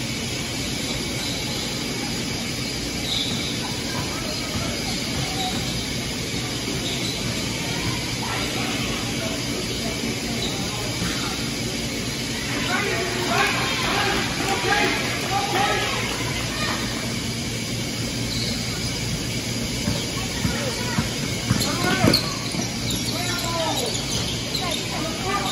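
Indoor basketball game sound: voices calling out across the gym, most clearly in the middle, over a steady background hum. A few sharp sneaker squeaks on the hardwood come near the end.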